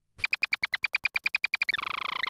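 A text-to-speech voice rattling off the word 'peace' over and over, about a dozen times a second, so fast that the repeats run together into a buzz near the end.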